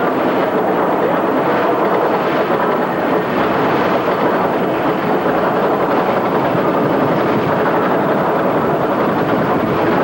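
Steel roller coaster train climbing the chain lift hill: a steady, even mechanical rattle of the cars and lift chain on the track.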